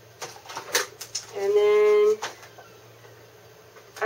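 A few sharp crackles and clicks from small plastic toy packaging being handled, then a woman's short hum held on one steady pitch for under a second.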